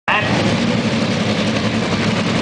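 An engine idling steadily and loudly at a drag strip.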